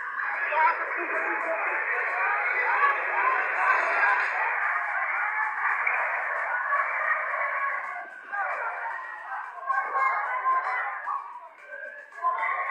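Several people's voices talking and calling out over one another, with no clear words. The sound is thin, with no bass and no top. The voices drop away briefly about eight seconds in.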